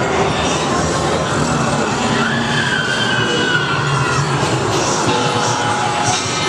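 Loud haunted-maze soundtrack: dense, grinding horror music and effects with a high, screeching tone that comes in about two seconds in.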